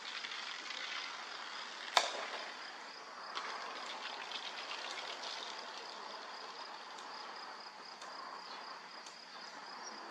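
Insects chirping in a steady, high-pitched pulsing trill over outdoor background hiss, with one sharp click about two seconds in.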